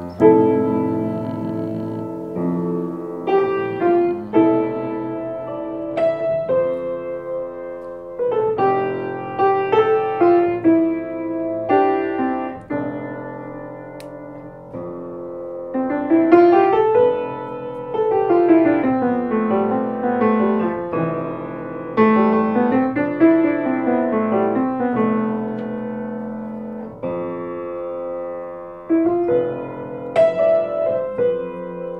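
Solo acoustic piano improvisation: a steady, repeating left-hand bass pattern held at an even tempo while the right hand improvises over it. From about halfway through, the right hand plays flowing runs that rise and fall.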